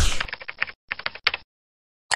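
Computer keyboard typing sound effect: a quick run of key clicks lasting about a second, just after the tail end of a whoosh.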